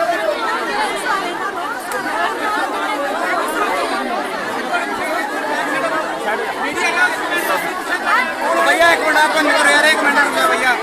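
A crowd of many voices talking and calling out over one another at once, a little louder near the end.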